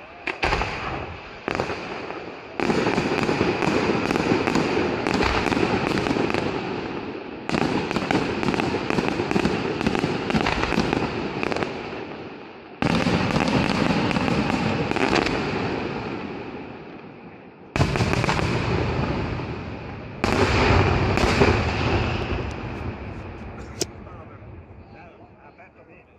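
Aerial fireworks display: several sudden loud bursts a few seconds apart, each followed by a dense crackle that dies away over several seconds.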